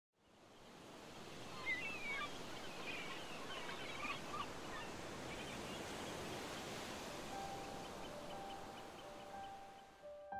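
Outdoor ambience with a steady hiss that fades in, and a few short bird chirps in the first few seconds. From about seven seconds in, soft held musical notes come in over it.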